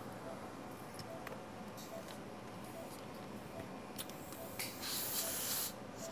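A burst of gas hissing for about a second near the end: carbon dioxide escaping through a laparoscopic umbilical trocar as it is pushed into the insufflated abdomen. A faint beep repeats about once a second.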